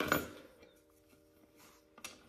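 A brief clatter as a wooden board with a metal bracket bolted to it is handled and set down on a concrete floor, then near quiet with a faint steady hum.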